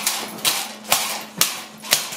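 Sharp cracks of a training stick striking the bite suit or the dog, four of them about half a second apart, while a protection dog holds its bite without growling.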